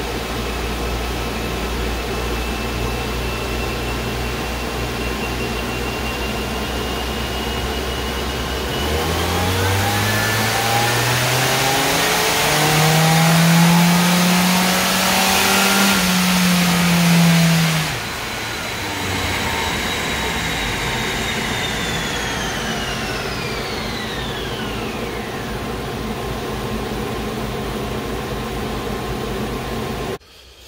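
Turbocharged Volvo four-cylinder on a chassis dyno making a full-throttle baseline pull. It idles steadily at first, then from about nine seconds in the engine note climbs for several seconds, holds near the top, and drops back to idle a little before halfway. Afterwards a high whine falls away over a few seconds, over the steady noise of the cooling fan.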